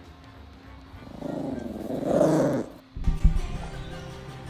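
Yorkshire terrier growling, rough and loud, for about a second and a half. A few low thuds follow near the end, over faint background music.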